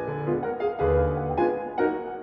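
Steinway grand piano playing a jazz-style classical etude, with low left-hand bass notes in the manner of plucked double bass under chords in the right hand.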